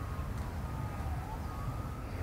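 Faint emergency-vehicle siren wailing, its pitch falling and then rising again, over a low steady rumble.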